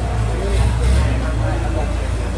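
A steady low engine rumble with people talking over it.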